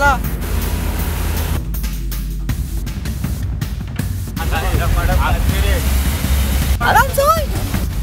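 Steady low rumble of a car driving through heavy rain, heard from inside the cabin, with the hiss of rain and water on the car. Music and voices sound over it.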